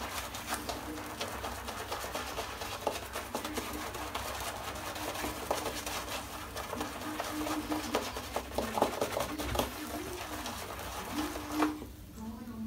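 Two-band finest badger shaving brush working soap lather on the face: a soft, crackly swishing of wet bristles and lather in many quick strokes. The shaver says the lather has turned airy, which he puts down to too much water at the start.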